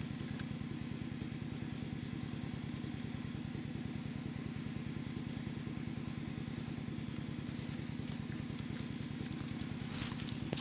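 A steady, low, rapidly pulsing hum like a small engine idling, unchanging throughout.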